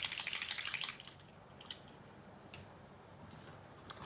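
Small bottle of alcohol ink shaken by hand: a rapid clicking rattle for about the first second, then a few faint separate clicks.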